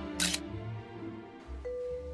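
A single camera shutter click about a quarter second in, short and sharp, over soft background music that is fading out. A mallet-like chime note enters near the end.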